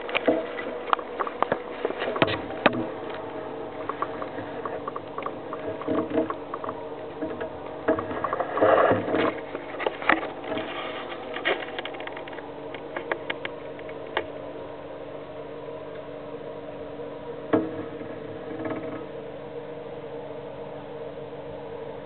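Handling noise from a handheld camera: scattered knocks and taps, thickest in the first few seconds and again around nine seconds in, over a steady hum.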